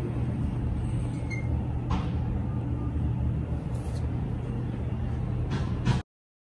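Steady low rumble of background noise, with a couple of faint clicks.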